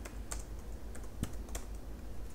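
Computer keyboard being typed: several separate, faint keystrokes spread through the two seconds.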